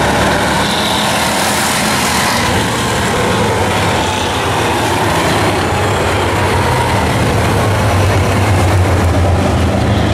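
A pack of Bomber-class stock cars racing around the track, their engines running together in a loud, steady drone that swells slightly near the end.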